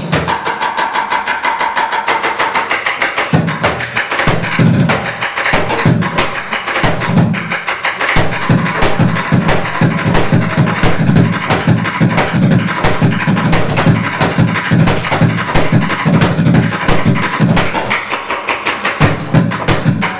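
Bucket drumming: drumsticks beating plastic buckets of several sizes in a fast, dense pattern, deep thumps from the bucket heads mixed with sharper, higher strokes. For the first few seconds the deep thumps drop out and only the higher strokes play, then the deep thumps come back in; they drop out again briefly near the end.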